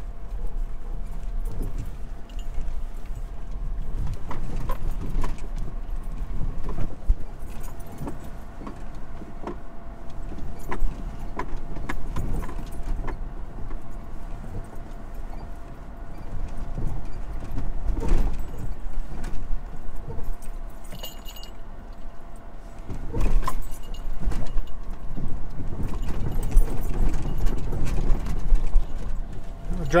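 Toyota 4Runner driving over a rough, bumpy dirt road, heard from inside the cabin: a steady low rumble of engine and tyres with frequent knocks and rattles of the body and loose gear over the bumps.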